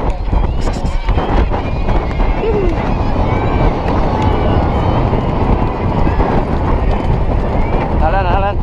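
Wind rushing over the microphone of a camera on a galloping jockey, with a racehorse's hoofbeats thudding on turf throughout and occasional voices from the riders.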